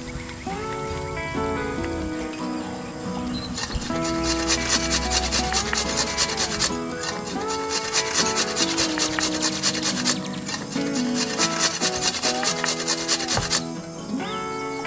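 Cheese being grated: rapid, even rasping strokes in three runs with short pauses, starting about four seconds in, over background music.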